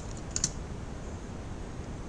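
A few quick keystrokes on a computer keyboard, clustered in the first half second, as a word is finished and Enter is pressed.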